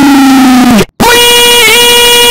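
Two deafeningly loud, heavily distorted drawn-out yells. The first sinks slowly in pitch and cuts off just under a second in; after a brief gap a second, higher one is held steady with a small wobble in the middle.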